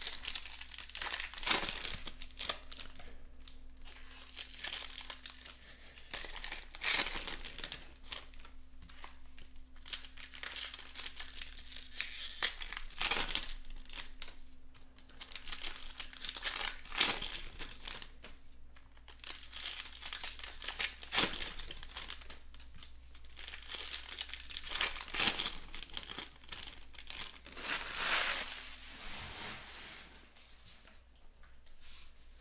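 Foil trading-card pack wrappers being torn open and crinkled, with stiff chromium cards rustling and slapping as they are handled, in irregular bursts every second or two.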